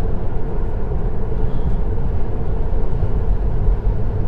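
Steady road and wind noise inside the cabin of a Tesla Model 3 at highway speed, about 88 km/h: tyre roar and rushing air with no engine note, as the car is electric.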